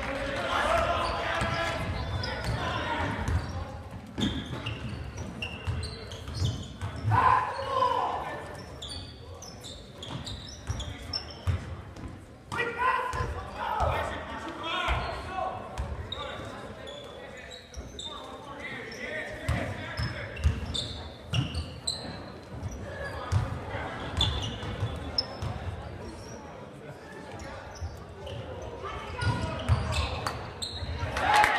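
Basketball dribbling on a hardwood gym floor, a run of repeated thumps, with short high sneaker squeaks and voices calling out, all echoing in the gym.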